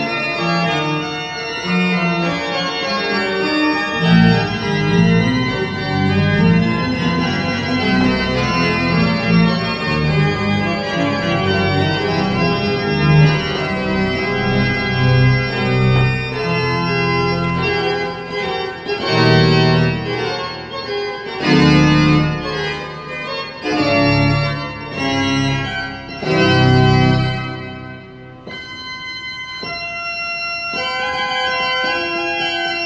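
Church pipe organ playing full sustained chords over a moving bass line. In the second half the chords come in short separated strokes, and near the end it drops to a quieter, thinner held sound.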